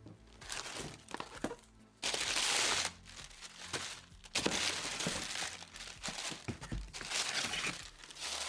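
Honeycomb paper packing wrap rustling and crinkling as it is pulled out of a parcel box, with a few light knocks of boxes being handled. The loudest rustle comes about two seconds in, then longer stretches of rustling from the middle on.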